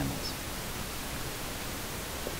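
Steady, even hiss of a recording's background noise, with no other sound.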